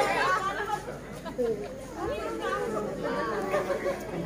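Indistinct chatter: several people talking at once, their voices overlapping.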